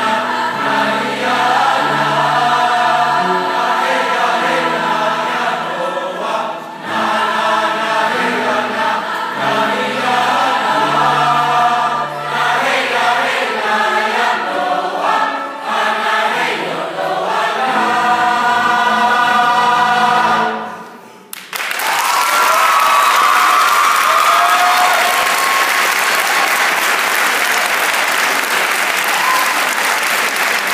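Large mixed choir singing with piano accompaniment until the piece ends about two-thirds of the way through. After a brief pause the audience breaks into applause and cheering that lasts to the end.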